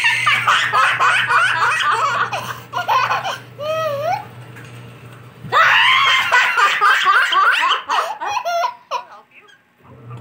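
A toddler and a woman laughing together in two long, hearty bouts, the child's high-pitched laughter prominent, with a short lull around the middle.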